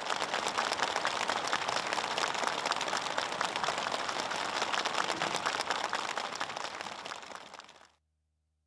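Applause from a roomful of people clapping together, a dense steady patter that fades out near the end.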